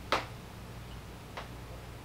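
Two brief clicks over a low, steady room hum: a sharper one just after the start and a fainter one a little past halfway.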